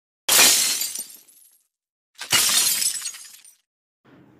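Glass-shattering sound effect, heard twice about two seconds apart: each crash starts suddenly and fades out over about a second.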